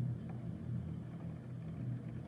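Heavy rain heard from indoors through a closed window: a steady, muffled low rumble.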